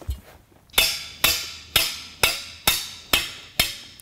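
Claw hammer tapping a joiner into the end of a clothesline spreader bar: about seven even taps, roughly two a second, starting just under a second in, each with a short metallic ring.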